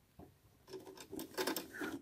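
Soft rustling and a few irregular light clicks as felt and fabric are handled and positioned under a sewing machine's presser foot.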